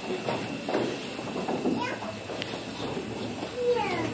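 Indistinct speech heard at a distance, with gliding tones near the end.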